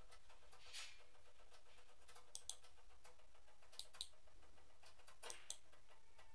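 Faint computer mouse button clicks: three quick press-and-release pairs about a second and a half apart, over quiet room hiss.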